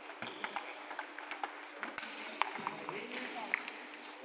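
Table tennis balls struck by rackets and bouncing on the table in an irregular series of sharp clicks during a rally.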